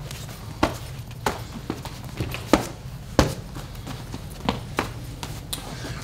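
Boxing gloves striking a partner's raised gloves and forearms as punches are blocked: a string of about nine sharp slaps at irregular intervals.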